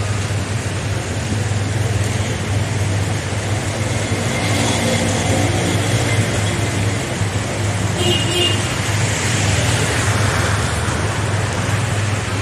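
Traffic in rain: a steady low engine hum and the hiss of tyres and rain on a wet road.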